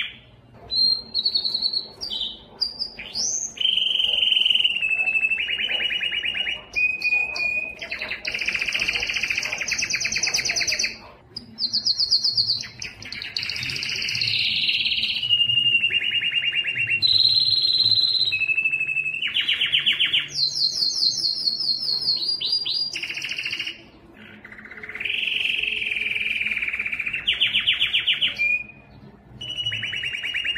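Domestic canary singing a long, high-pitched song of rapid trills and rolled phrases, one after another, broken by a few short pauses.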